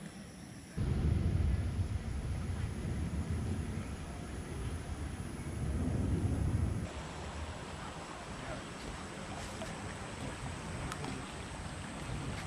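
Wind buffeting the microphone, a loud low rumble that starts suddenly about a second in and stops about seven seconds in. It gives way to the steady rush of a shallow creek flowing over rocks.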